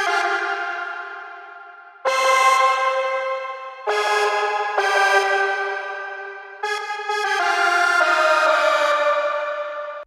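Solo synth lead playing a hook melody doubled in octaves. It plays sustained notes rich in overtones, each note starting sharply and fading slowly, about six notes in all.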